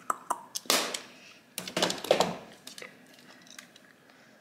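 Makeup compacts and palettes being handled over a vanity drawer: several sharp clicks and taps in the first second, then a couple of stretches of fuller handling noise, fading toward the end.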